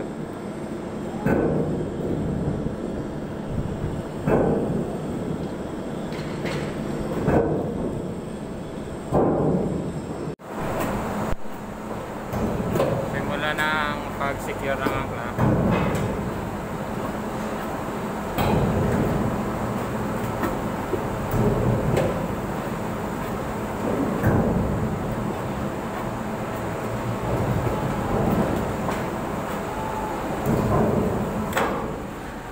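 Ship's anchor windlass heaving the anchor chain in slowly: a steady machinery hum with a heavy clank about every three seconds as the chain links come over the gypsy.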